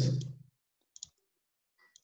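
Computer mouse clicking: one short click about a second in and another just before the end, made while selecting in an equation editor.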